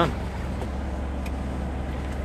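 XtremepowerUS twin-tub portable washer running its rinse cycle, a steady low motor hum.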